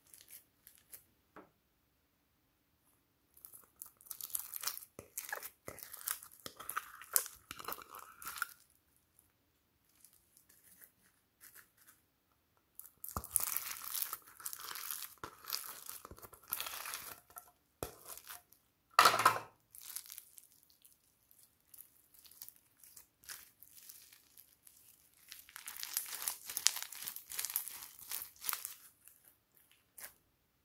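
Foam-bead slime being squeezed and kneaded by hand: the tiny foam balls crackle and pop in three spells of several seconds each. There is one short, louder pop-like sound about two-thirds of the way through.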